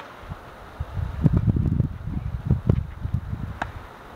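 Tennis ball struck by a racket at the very start, then gusts of wind buffeting the microphone as a loud low rumble through the middle, and a fainter, sharp ball impact near the end.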